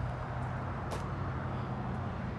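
Steady low hum of an idling diesel truck engine, with a single short click about a second in.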